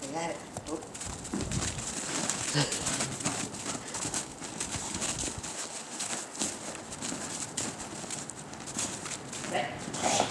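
Footsteps crunching in packed snow, an irregular series of short crunches as a person and a dog move about. A short voice-like sound is heard right at the start.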